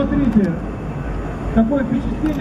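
A man's announcer voice talks over a steady rumble of jet noise. The voice breaks off about half a second in and comes back near the end. The rumble is the Tu-160 bomber's engines passing overhead.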